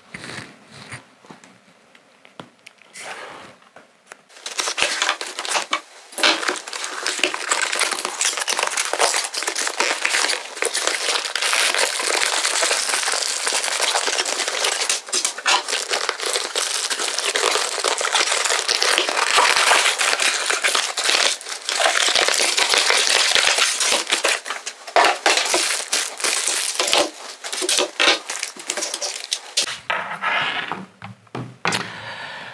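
Product packaging being unpacked: a cardboard box handled with a few light knocks, then from about four seconds in, packaging crinkling and rustling almost without a break as the contents are pulled out.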